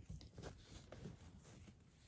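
Near silence, with faint soft rustles of cotton binding and quilt fabric being handled by gloved hands.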